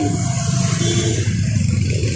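A motor vehicle's engine running close by, a steady low rumble with street noise.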